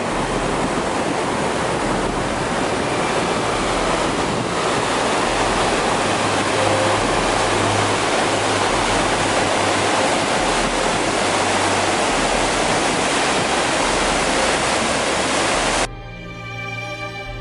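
Steady rush of a fast mountain river running white over rocks.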